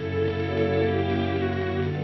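Instrumental film-score music with sustained, held chords; a new bass note comes in near the end.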